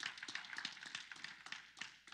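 Scattered handclaps from a few people, thinning out and fading away.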